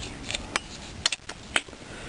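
A few sharp, irregular clicks and knocks of a wrench turning the loosened 19 mm flywheel nut on a motorcycle engine.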